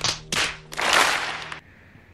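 A few sharp claps followed by about a second of hissing noise that stops suddenly.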